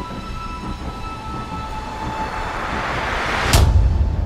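Logo-intro sound design: a low rumble under faint held tones, with a swelling whoosh that builds to a sharp, loud hit and deep boom about three and a half seconds in.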